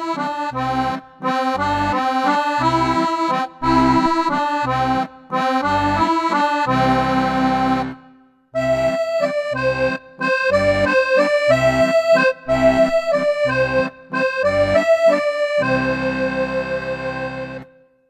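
Roland FR-4x digital V-accordion playing its factory default reed sound, the set that comes up at power-on with no register selected: a right-hand melody over a rhythmic left-hand bass and chord accompaniment. It plays in two phrases with a brief break about eight seconds in, and ends on a held chord.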